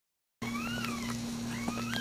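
Newborn Maltese puppy crying, two thin high-pitched squeals that rise and then fall, over a steady low electrical hum. The sound cuts in about half a second in.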